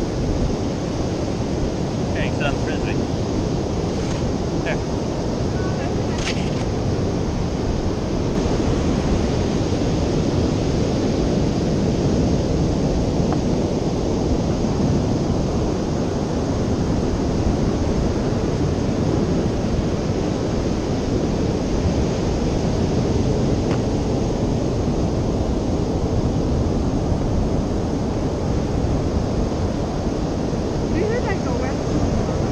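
Ocean surf breaking on a sandy beach, mixed with wind buffeting the microphone as a steady low rush.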